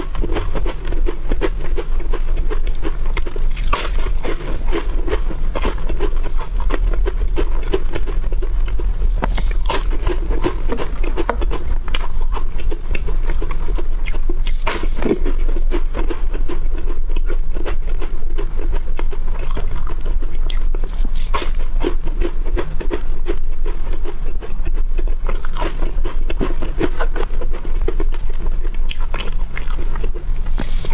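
Crisp layered wafer bars being bitten and chewed: crunching bites with crackling chewing between them, a few sharper crunches standing out.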